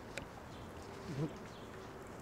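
A man drinking a thick shake straight from a blender jug: quiet swallowing, with one short gulping sound in the throat about a second in.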